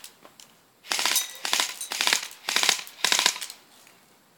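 Battery-powered airsoft rifle firing on automatic: four short bursts of rapid shots, starting about a second in.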